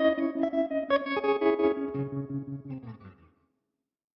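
Electric guitar (Fender Telecaster) played through a Magnetic Effects Electrochop optical tremolo pedal on its "Modulate Tremolo" setting. The notes pulse in volume several times a second and die away a little after three seconds in.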